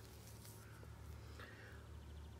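Near silence: faint outdoor room tone with a steady low rumble.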